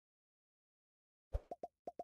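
Silence, then a quick run of four or five short, soft pops close together near the end: the pop-in sound effect of an animated subscribe banner.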